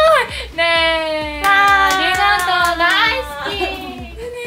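Two young women squealing with excitement in long, high-pitched held cries of "yay", with hand clapping through the middle.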